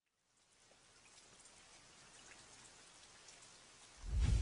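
Near silence, with a faint even hiss fading in about half a second in and slowly growing.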